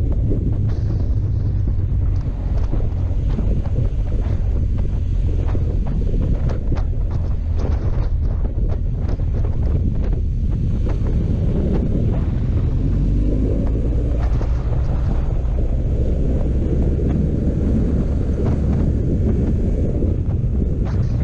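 Motorcycle engine running at road speed, a steady low rumble under heavy wind noise rushing over the microphone.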